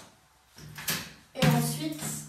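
A woman's short hum held on one pitch, preceded by a brief soft scrape or knock.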